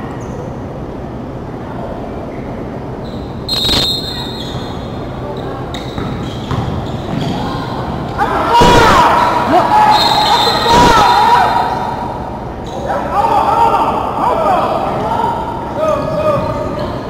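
Basketball bouncing on a hardwood gym court amid echoing, indistinct shouting from players and spectators, loudest in the middle. A sharp knock about three and a half seconds in.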